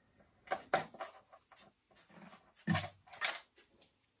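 A handful of light clicks and taps from fingers handling cables and small parts inside an opened iMac, with a louder pair near the end.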